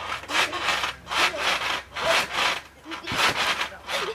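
Backyard trampoline being bounced on: the mat and springs give a rasping stretch with each bounce, repeating about twice a second.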